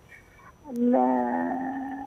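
A woman's long, drawn-out hesitation vowel, a held 'aah' at one steady pitch, heard over a telephone line. It starts just under a second in and lasts over a second.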